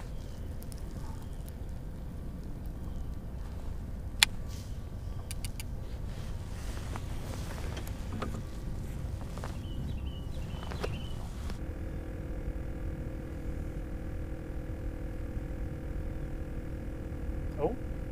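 A low steady rumble of open-air noise on a small fishing boat, with a sharp click about four seconds in and a few fainter clicks just after. About two-thirds of the way through, a steady mechanical hum of several held tones starts and keeps going.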